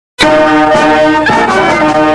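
Instrumental anthem music starting abruptly a fraction of a second in, with sustained brass-sounding chords that shift every half second or so.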